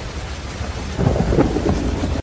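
Thunder sound effect for a title sting: a deep rumbling crash that fades a little, then swells again with crackling about a second in.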